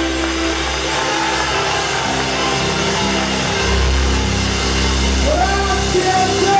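Live band of keyboards, electric guitar, bass and drums playing the sustained closing chords of a tenor aria. A long held sung note stops about half a second in, and a deep bass swell comes in a little before four seconds.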